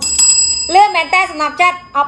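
A single bright bell-like ding struck once at the start, ringing on and fading over about a second and a half.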